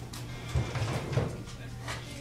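Indistinct voices over quiet background music, with a steady low hum and two short sharp clicks, one near the start and one near the end.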